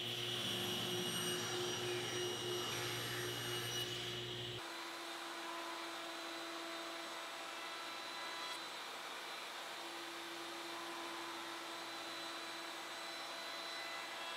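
Table saw motor running steadily while small maple parts are cut on a jig. About four and a half seconds in it gives way to a router table running a 1/8-inch round-over bit, a steady higher whine with the low hum gone.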